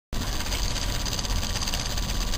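Small homemade Newman motor running on a 9-volt battery: its magnet rotor spins on a straightened paper-clip axle, making a steady, fast mechanical rattle.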